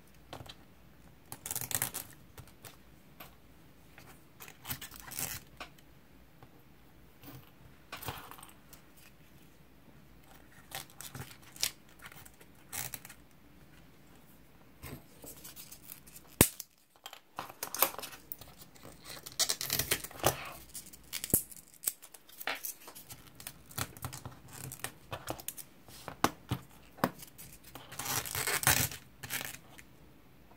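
Small pieces of sususkkang craft stick being handled and pressed onto paper: irregular rustling, scratching and light clicks, with one sharp click about halfway through and busier handling after it.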